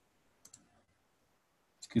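Two quick, faint computer-mouse clicks in close succession about half a second in, a double-click.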